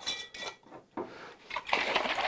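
A glass jar and its plastic lid being handled on a tabletop: a few light clinks and knocks as the lid is picked up to be put on.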